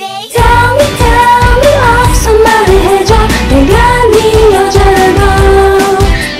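A woman singing a K-pop song over a pop backing track with a steady beat. The music comes back in just after a brief break, about a third of a second in.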